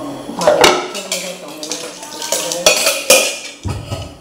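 A metal spatula knocking and scraping in a black iron wok, with pots being handled: a string of sharp clanks with a short ring after each.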